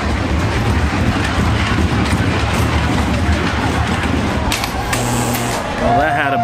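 Comet wooden roller coaster train rolling on its track with a steady low rumble, and a brief hiss about five seconds in.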